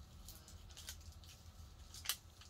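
Faint crinkling and tearing of a chocolate bar's packaging being ripped open by gloved hands, a few soft crackles over a low room hum.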